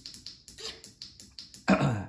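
Shimano Ultegra RX805 Di2 electronic rear derailleur stepping through a run of shifts, a quick even series of clicks, about seven a second, that stops about a second and a half in as it reaches the end of its travel. A short bit of voice follows near the end.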